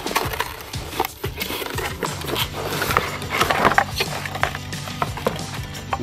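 Cardboard box and its packing being handled, with scrapes, rustles and light knocks as the battery is lifted out. Background music plays under it.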